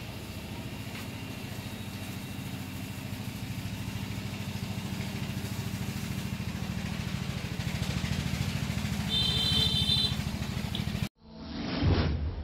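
A small engine running steadily with a fast, even pulse, growing a little louder towards the end. A brief high-pitched tone sounds near the end, and the engine sound cuts off suddenly.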